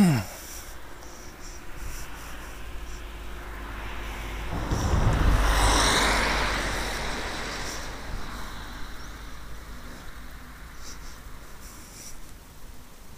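A road vehicle driving past, its engine and tyre noise swelling to a peak around the middle and fading away.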